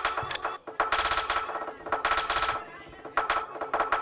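Experimental electronic music played live on a modular synthesizer: rapid, stuttering runs of clicks in bursts about half a second long over steady held tones.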